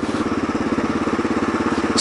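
Kawasaki KLR650's single-cylinder four-stroke engine running at a steady cruise while riding, an even, fast pulse that holds the same pitch throughout.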